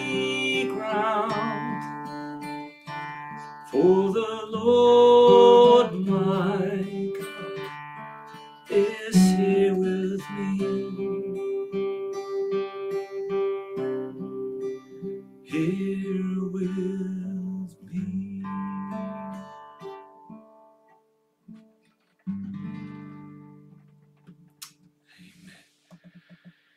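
Acoustic guitar strumming the closing chords of a slow song, with a man's voice holding a wavering sung note in the first few seconds. The chords thin out, and the last one, about 22 seconds in, rings away and fades.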